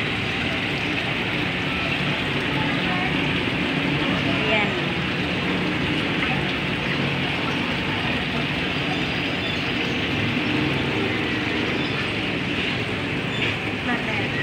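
Indistinct voices over a steady, continuous background noise.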